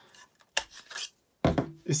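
Two sharp clicks of a lens hood and camera lens knocking together as they are handled, about half a second and a second and a half in, with lighter handling sounds between.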